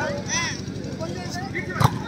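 A volleyball hit once with a sharp smack just before the end, during a rally. Players and onlookers call out around it, with a short shout about half a second in.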